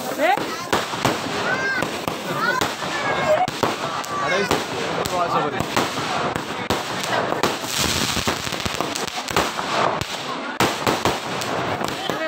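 Aerial fireworks bursting overhead, a dense, unbroken string of sharp bangs and crackles.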